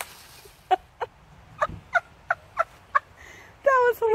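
Alaskan Malamute vocalising: a string of about seven short, high yips, then a longer, held 'woo' howl-talk starting near the end.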